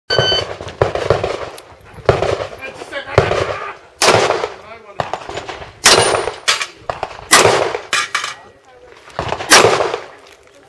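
A shot-timer beep at the very start, then a string of about a dozen handgun shots at irregular intervals, each with a short echo off the berms.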